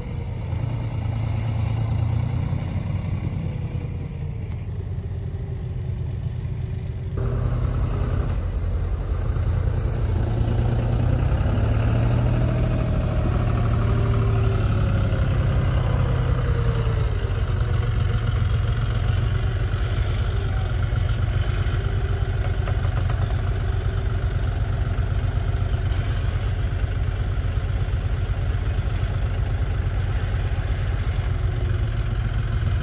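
A John Deere utility tractor's diesel engine running steadily while its front loader handles round hay bales. Its pitch rises and falls a few times between about 8 and 17 seconds, and the sound gets louder about 7 seconds in.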